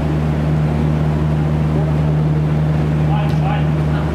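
A steady low mechanical hum runs throughout. About three seconds in, a player gives a short call and there is a faint knock, likely a ball being kicked.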